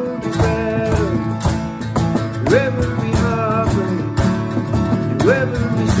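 Acoustic worship song: strummed acoustic guitar and a cajon beat under a male voice singing long held notes, each phrase sliding up into its note.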